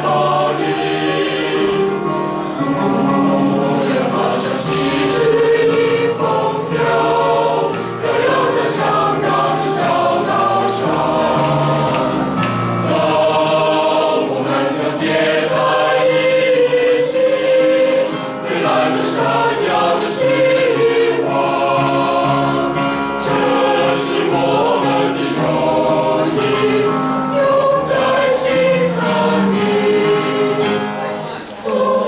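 A choir singing in several parts at once, continuously and without a break.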